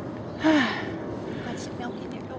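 A person's short breathy sigh, falling in pitch, about half a second in, over a steady background hiss.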